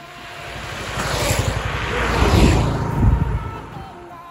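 Two single-cylinder sport motorcycles, a KTM RC 200 and a Yamaha R15, passing at full throttle in a drag race. The engine sound builds, peaks as the first bike passes about two and a half seconds in with the second close behind, then falls away.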